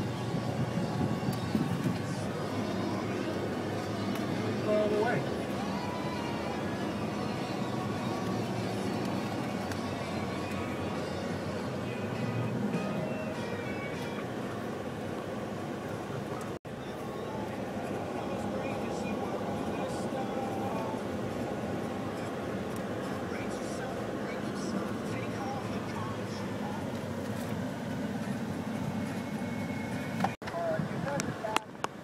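Pickup truck driving slowly over rough dirt tracks, heard from inside the cab: a steady rumble of engine and tyres, broken by a brief dropout about halfway through.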